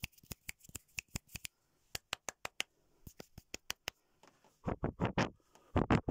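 A quick, irregular run of sharp small clicks, several a second, through the first half. A few louder, rougher rustling bursts follow near the end.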